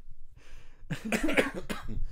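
A man coughing, a short run of coughs starting about a second in.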